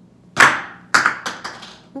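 Water being poured into a steam iron's water tank, coming in splashing bursts: two loud gushes about half a second apart, then smaller ones. It is a "méchant bruit", a nasty noise.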